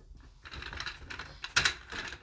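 A quick, irregular run of light clicks and rattles, loudest about one and a half seconds in.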